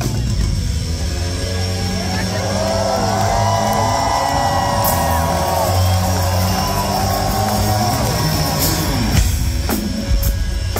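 Live rock band: distorted electric bass holding low notes that change in steps, with bending higher lines over them through the middle, and sharp drum hits coming back in near the end.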